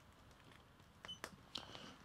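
Near silence, then a few faint clicks about halfway through and light rustling near the end as a tape measure is pulled out.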